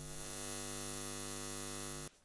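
Steady electrical buzzing hum of a neon sign, full of overtones.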